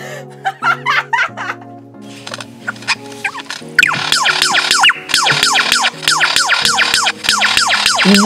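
Superb lyrebird calling: a few scattered chirps, then, from about four seconds in, a rapid run of quick downward-sliding whistled notes at about five a second. Background music plays throughout.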